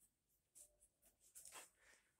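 Near silence, with a few faint, brief scratching rustles of a hand moving against hair, cap and jacket sleeve.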